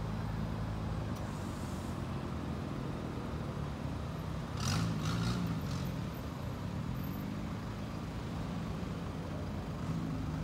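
Road traffic: car and van engines running in a steady low hum, with vehicles passing. About five seconds in a vehicle goes by louder, with a few short hisses.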